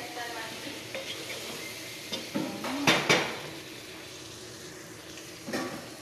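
Chicken sizzling in a pot while a wooden spoon stirs and scrapes it, with a steady hiss throughout. The spoon knocks sharply against the pot twice about three seconds in, the loudest sounds, and once more near the end.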